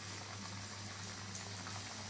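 Battered chicken pieces deep-frying in hot oil, the oil bubbling and sizzling steadily with a few faint crackles, over a steady low hum.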